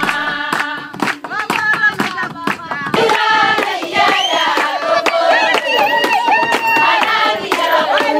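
Rhythmic hand clapping, sharp beats two or three times a second, with a group of voices singing along.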